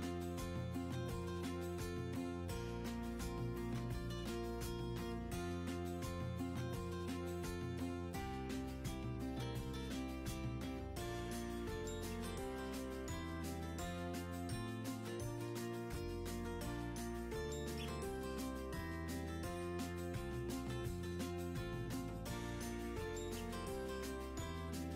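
Instrumental background music with a steady beat and a bass line.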